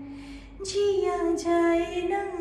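A woman singing a slow Hindi song solo, with no accompaniment to be heard: a breath in the first half second, then a held note from about half a second in.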